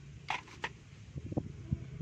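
Light, irregular clicks and rattles of small parts being handled, starting a couple of times early and then running on from about halfway, over a steady low hum.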